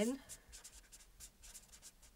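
Felt-tip marker writing on paper: a run of short, faint scratching strokes as a word is written.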